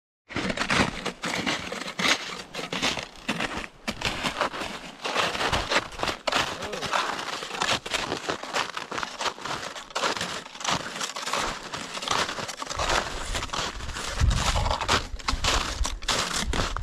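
Snowshoes crunching in packed snow, a continuous run of irregular crunching footsteps. A low rumble joins in a little before the end.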